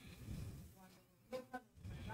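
Faint, indistinct speech: a woman's voice reading quietly into a microphone, over a low rumble.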